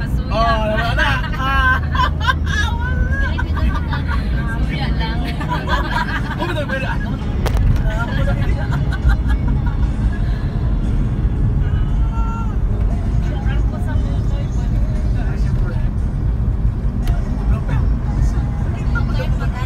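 A moving vehicle's steady low engine and road rumble, with people's voices over the first seven seconds or so and fainter voices later.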